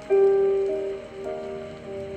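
Gentle background music: clear, ringing notes that start sharply and fade, a new note about every half second.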